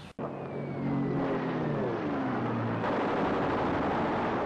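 Soundtrack of Pearl Harbor attack footage: a propeller aircraft engine droning and dropping in pitch, with a thin falling whistle above it. About three seconds in, a loud rumbling blast of noise takes over.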